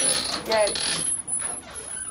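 A bunch of keys jingling and clinking at a metal security door, in two short bouts with a brief spoken "hey" between them.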